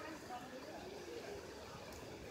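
Faint background chatter of people talking, with no single clear voice.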